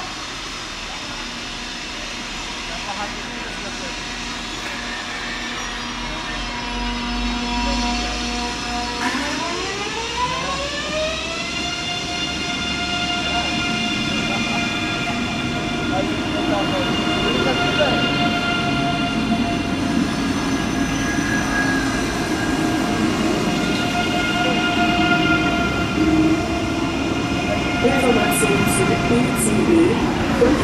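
ICE 3 high-speed electric trainset pulling out. Its electrical equipment gives a steady multi-tone whine at first. About nine seconds in, the traction drive's tones glide up in pitch over a few seconds as it gets moving, then hold steady. Wheel and rail noise grows louder as the train gathers speed.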